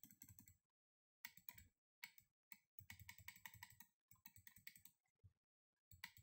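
Faint computer mouse clicking: short runs of rapid clicks with brief gaps between them, as the eraser tool is clicked over and over.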